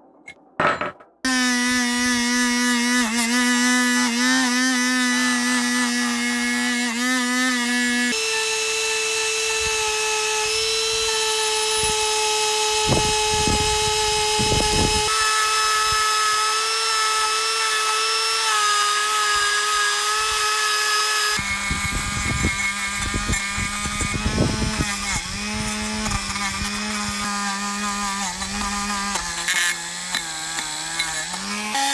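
A handheld rotary tool running with a steady, high motor whine while its small wire brush scrubs rust off a cast-iron hand plane body, with bursts of scraping where the bit bears on the metal. Its pitch drops and rises a few times as the load on the motor changes. Near the start there are a couple of sharp clicks.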